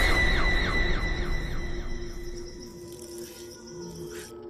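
Horror-film scare sting: a shrill, squealing tone over a wash of noise, fading away over about two seconds and leaving a low held drone.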